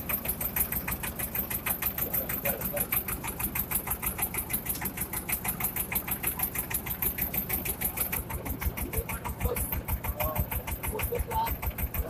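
A pompong's (small wooden river boat's) engine running steadily under way, a rapid, even chugging pulse. Its low beat grows stronger near the end.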